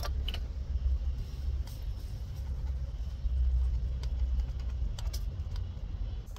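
A steady low rumble, swelling a little past the middle, with a few light clicks of the ground cable and its metal terminal being handled.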